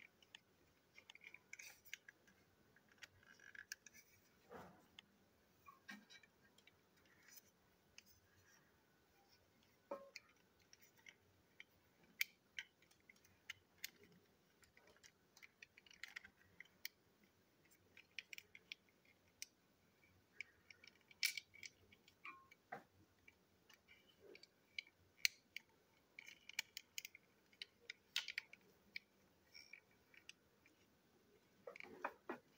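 Faint, irregular small clicks and taps of hard plastic toy train parts being handled and fitted together by hand, a few sharper clicks standing out now and then.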